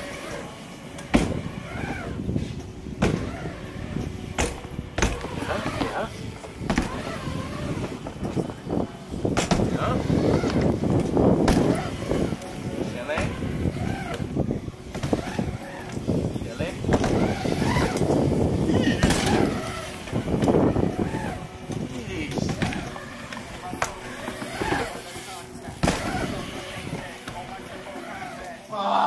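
BMX bike tyres rolling across a ramp's surface, the rolling noise swelling for a couple of seconds at a time as the rider pumps up and down the walls, with sharp knocks of wheels and pegs striking the ramp and coping scattered throughout.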